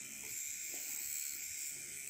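Deminuage NanoPen Lux microneedling pen running on its lightest setting while pressed against the skin under the eye: a faint, steady, high buzz, likened to a dentist's tooth-polisher.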